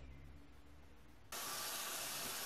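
Near silence for about a second, then, starting abruptly, the steady sizzle of chopped onions frying in a stainless steel pot.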